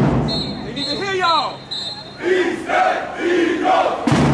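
Marching band members shouting and chanting in loud bursts, with the ring of a drum and cymbal hit at the start.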